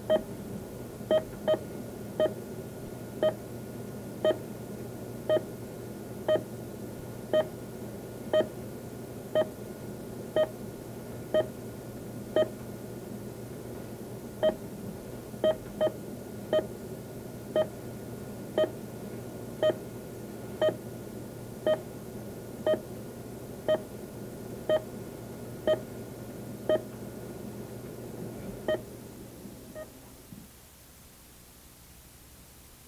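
Heart-rate monitor beeping, one short electronic tone about once a second, with a few beats coming closer together, over a steady low electrical hum. The beeps fade near the end.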